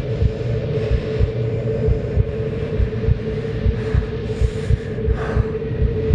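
A low rumbling sound-design drone with a steady held hum and uneven low pulses about twice a second, a throbbing, heartbeat-like bed under the scene.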